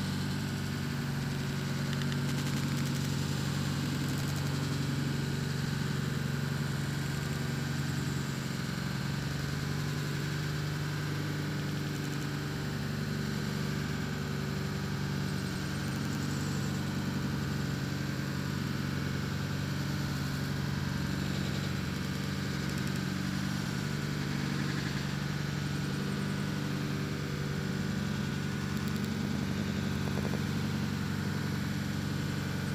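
Car engine idling steadily, a low even hum that holds without change.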